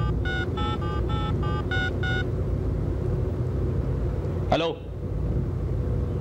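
Mobile phone keypad tones as a number is dialled: a quick string of about eight short two-pitch beeps over the first two seconds. Under them runs the steady low rumble of a car's interior while it is moving.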